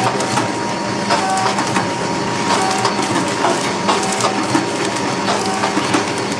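DXDF500 automatic powder sachet packing machine running: a steady dense clatter of clicks and knocks from its mechanism, with a short tone recurring roughly every second or so as it cycles.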